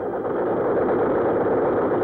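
Machine gun firing one long, continuous burst of automatic fire that starts abruptly.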